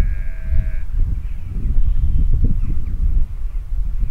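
Wind buffeting the microphone in irregular gusts, a heavy low rumble throughout. A brief high-pitched tone sounds at the very start and lasts under a second.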